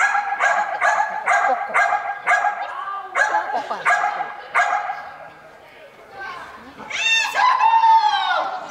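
A dog barking in an even run of about eleven barks, roughly two a second, stopping about five seconds in, then a higher, drawn-out yelping whine that bends up and down near the end.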